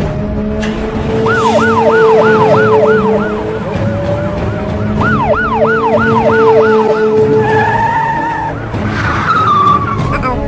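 Cartoon police car siren sound effect: a fast rising-and-falling yelp, about four sweeps a second, in two spells over a steady engine hum. A short steady tone sounds about eight seconds in, followed by a falling glide near the end.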